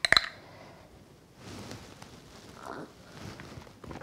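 A small spoon clinking against an espresso cup a few times right at the start, stirring the espresso, followed by faint soft sounds.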